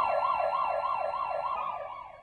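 Ambulance siren in a fast yelp, its pitch sweeping up and down about seven times in two seconds, fading out near the end.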